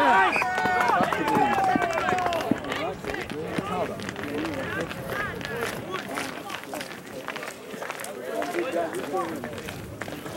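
Several voices shouting and calling out on a rugby touchline, loudest in the first two or three seconds, then dying down to scattered quieter calls.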